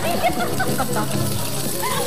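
Several people's voices overlapping in unworded chatter and exclamations.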